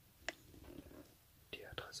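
A single sharp click, then a person whispering.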